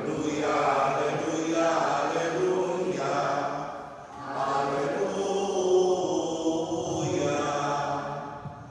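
Voices singing a slow liturgical chant in two long phrases of held notes, with a brief dip between them about four seconds in.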